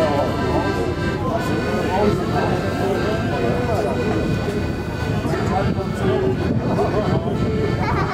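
Crowd of people talking, no single voice clear, over music of steady held notes.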